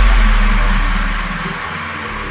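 Dubstep track: a heavy, deep bass with a distorted, engine-like synth layer that dies away over the two seconds.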